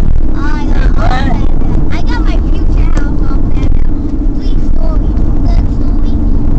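Car cabin noise while driving: a steady low engine and road rumble, with a voice speaking indistinctly over it on and off.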